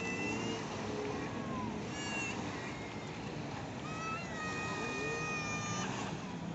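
Beach ambience: a steady wash of surf and wind, with a few high, drawn-out calls over it, the longest lasting about two seconds near the end.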